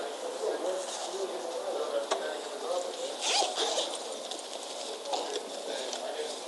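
Recording played back through a small handheld Sony voice recorder's speaker: indistinct background voices and light clatter, with a brief rustling noise about three seconds in.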